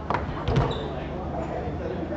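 Two sharp knocks from play on a foosball table, about a third of a second apart, the second the louder.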